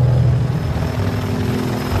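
Helicopter in flight: a steady low engine and rotor drone. The pitch shifts about halfway through.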